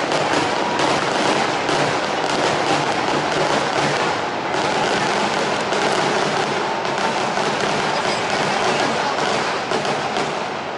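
Aerial fireworks going off in a dense, continuous barrage of bangs and crackling, easing slightly near the end.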